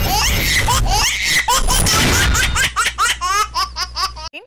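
Title-sequence jingle with recorded laughter sound effects over a steady electronic music bed, ending in a quick run of high 'ha-ha-ha' laughs.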